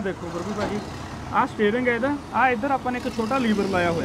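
A person speaking over a steady low rumble.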